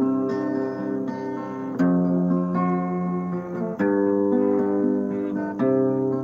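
Acoustic guitar played solo, moving to a new chord about every two seconds; each chord is struck sharply and then rings out.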